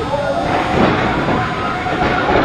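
Steady din of a small wrestling crowd in a warehouse, with indistinct voices talking over it.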